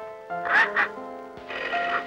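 A woman sobbing, two short sobs about half a second in, over soft film-score music with sustained notes.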